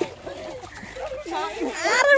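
Water splashing as a woman is pushed down into a large metal basin of water and a mug of water is poured over her head. Excited voices are heard throughout, with a loud high-pitched shout near the end.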